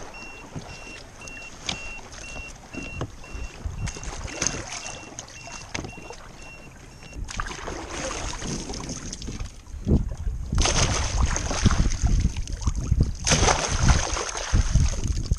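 A short, high electronic beep repeats about twice a second and stops about seven seconds in. After that comes water splashing and sloshing, loudest near the end.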